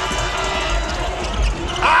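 Game sound from a basketball arena: a steady crowd din with music playing in the hall, and a basketball being bounced on the court.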